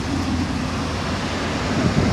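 Steady low hum of an idling vehicle, with no distinct event standing out.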